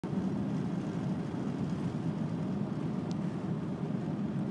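Steady low drone of a VW Transporter T5 van driving along a road, its engine and tyre noise heard from inside the cab.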